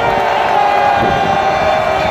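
Large football stadium crowd shouting and cheering as players set at the line of scrimmage, a loud, steady wall of many voices with no let-up.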